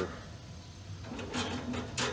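Metal wire rib rack clinking and rattling against the wire cooking grate inside a Masterbuilt electric smoker's steel cabinet, a few sharp clinks in the second half.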